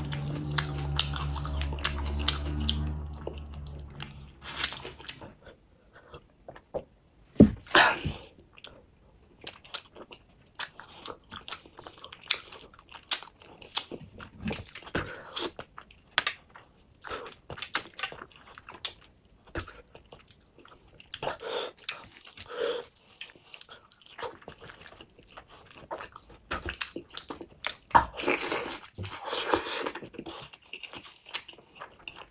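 Close-up eating sounds of a mouthful of rice and fish curry eaten by hand: wet chewing and smacking with short irregular clicks and crunches. A low steady hum fades out over the first few seconds.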